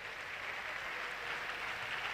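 Faint, steady applause from the congregation, heard at a distance.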